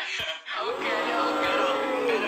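A song playing back: a male lead vocal with heavy pitch correction over a backing track, one long held note starting about half a second in and sliding down near the end.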